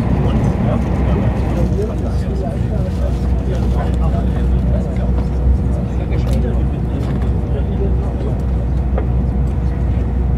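Interior of an ICE high-speed train running at speed: a steady low rumble from the wheels and running gear, with a thin constant hum above it.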